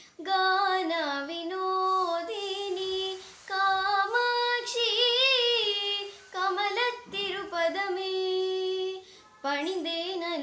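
A young girl singing a devotional song to the goddess solo, with no accompaniment, in long held phrases with wavering, ornamented notes. Brief breath pauses break the line about three, seven and nine seconds in.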